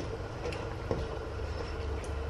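Bottle gourd and sardines cooking in a frying pan with a faint sizzle, stirred with a wooden spatula that gives a couple of light knocks, over a steady low rumble.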